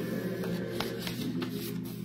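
Sheets of paper being handled and turned, a handful of crisp rustles, over faint sustained choral music.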